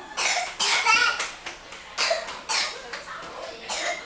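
A young child coughing in short bursts, about five spread over four seconds.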